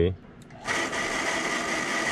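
Hot-water booster pump starting up about two-thirds of a second in and then running steadily with a thin high whine, kicked on by its flow switch as the hot tap is reopened on the top floor.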